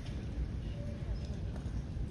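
Uneven low rumble with faint audience murmur in a large hall.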